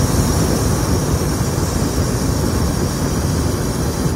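Hot air balloon's propane burner firing in one long, loud, steady burn.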